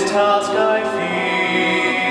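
A man singing a slow solo song from a stage musical, holding long notes over musical accompaniment, moving to a new note about a second in.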